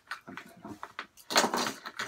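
Hard plastic fishing lures and a plastic tackle tray being handled, with light clicks and then a short clatter about a second and a half in.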